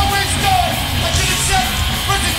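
Hardcore punk band playing live: distorted electric guitars, bass guitar and drums, with shouted vocals over them.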